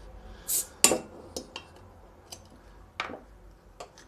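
A glass beer bottle's crown cap is pried off with a metal bottle opener: a short hiss and a sharp metallic click just under a second in, then a few lighter clicks and clinks of the metal opener and cap.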